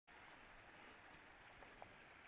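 Near silence: faint outdoor ambience with a couple of brief, faint high chirps.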